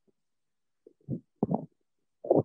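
A heavy horse at the hay close to the microphone: a few short, dull, low sounds, one about a second in and a cluster around a second and a half.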